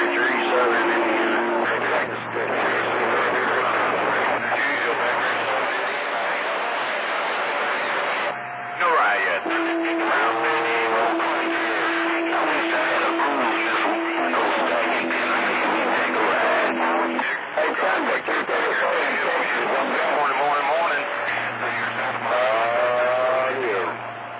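CB radio receiving skip on channel 28: garbled, hard-to-follow voices talking over one another through static and fading, with steady tones held under them, one starting about ten seconds in and lasting several seconds, joined by a lower one near its end.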